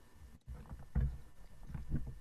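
Low bumps and rumble coming over a video-call audio line, with two brief dropouts in the first half-second and a faint trace of a voice.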